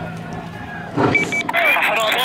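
Vehicle running under a low hum, then about halfway a sudden burst of noise, two short high beeps and several people's voices shouting, much louder.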